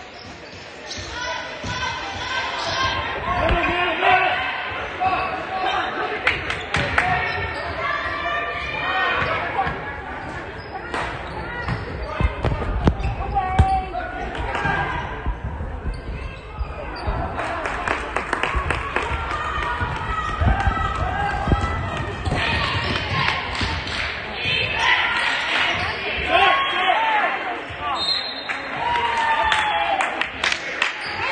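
Basketball being dribbled on a hardwood gym floor, with a string of short bounces, amid voices of players and spectators calling out in an echoing gymnasium.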